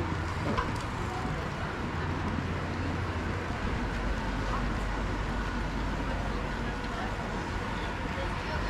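Steady urban outdoor ambience: road traffic with a continuous low rumble, deepening from about halfway, and indistinct voices of passers-by.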